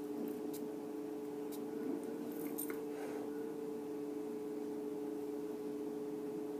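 A steady two-tone hum in a small room, with a few faint ticks and a brief soft hiss about two and a half seconds in.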